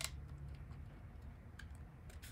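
Small plastic clicks and handling noise as SATA cable connectors are pushed onto a 2.5-inch SSD, with one sharp click at the start and a few fainter ones after, over a low steady hum.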